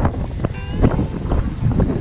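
Wind buffeting an action camera's microphone as a low, uneven rumble, with music over it.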